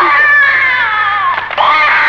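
Infant crying: one long wailing cry that falls slowly in pitch and breaks off about a second and a half in, then a fresh cry starts.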